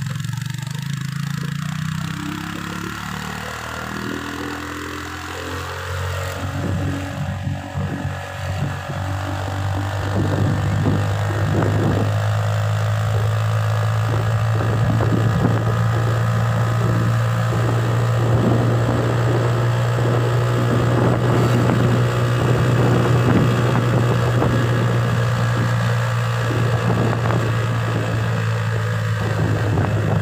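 A car's engine and tyre noise heard from inside the moving car: a low drone that shifts in pitch over the first few seconds, then holds one steady pitch and grows a little louder about ten seconds in.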